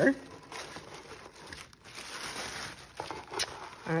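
Tissue paper and plastic packaging rustling and crinkling as hands part the wrapping in a box, with a few sharper crackles.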